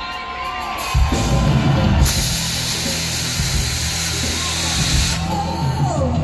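Live pop band music played loud over a hall PA. The bass and drums come back in about a second in, with a bright cymbal-like wash high up from about two to five seconds in, while audience members whoop and cheer over it.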